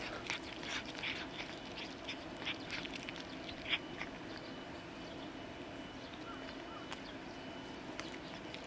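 Cats chewing shredded chicken breast: a run of quick wet smacking clicks, dense for the first few seconds and thinning out after about four seconds.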